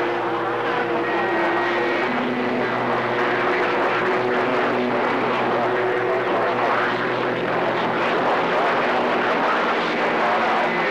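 CB radio receiver hissing with static and band noise while tuned for skip, with faint steady whistling tones sitting under the hiss.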